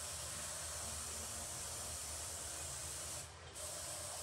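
Airbrush hissing steadily as it sprays paint. The spray cuts off briefly about three seconds in, then starts again.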